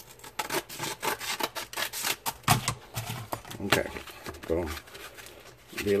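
A sandpaper-covered wooden sanding block being handled and rubbed against the edge of a wooden guitar body: irregular rustles, scrapes and light knocks.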